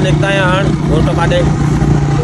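Motorcycle engine running steadily while under way, with a man's voice talking over it for the first second or so.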